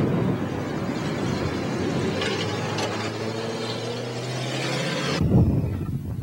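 Steady rumbling road and wind noise from a moving car, with a steady engine hum joining in the second half. It cuts off abruptly about five seconds in, followed by a brief low thump.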